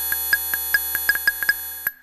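STS Serge modular synthesizer playing a steady, held cluster of electronic tones under irregular, quick pings from its pinged Variable Q filter voices. The sound cuts out abruptly just before the end.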